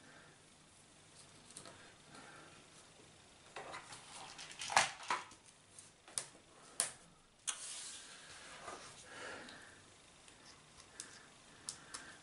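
Small metal washers and screws being handled: a few scattered light clicks and clinks, bunched around the middle, as parts are picked from a plastic parts organiser and set onto the screws. It is fiddly, small-parts work.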